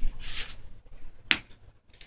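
A single sharp snap-like click about a second in, over the low rumble and rustle of the camera being handled and moved.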